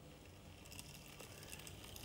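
Faint running of a 3D-printed 00 gauge LBSC Gladstone model locomotive as it pulls away with a load of five bogey coaches on level track, growing slightly louder toward the end.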